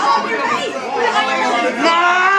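Several people talking and calling out over one another: loud crowd chatter.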